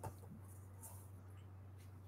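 Faint strokes of a dry-erase marker drawing on a whiteboard, a few short high-pitched scratches, over a low steady hum.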